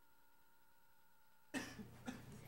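Near silence with a faint steady hum, broken about a second and a half in by a sudden cough, a sharp burst with a smaller second burst right after it.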